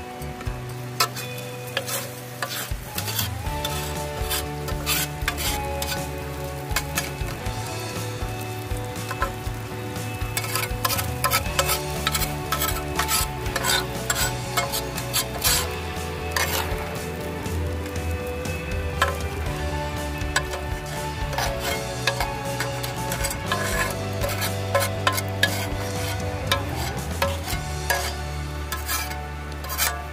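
A spatula scraping and clicking against a frying pan as scrambled eggs are served out of it, with a light sizzle, over background music with held notes and a slow-changing bass.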